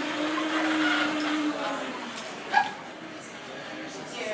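TUG autonomous hospital delivery robot's drive motors running with a steady whine as it rolls along the floor, fading out about two seconds in.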